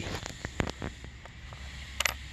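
Low wind rumble on the microphone, with a few faint clicks in the first second and one sharper click at the end, from the detector and coin being handled close to the microphone.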